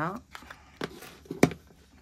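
A white cardboard jewellery advent-calendar box being handled and its lid opened: soft rustling with a few light knocks, and one sharp tap about one and a half seconds in.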